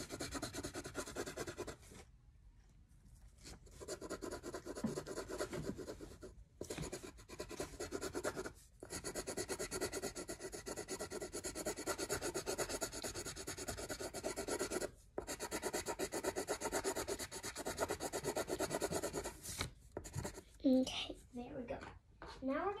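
Coloured pencil scribbling on paper in fast back-and-forth strokes as leaves are shaded in, with a few short pauses.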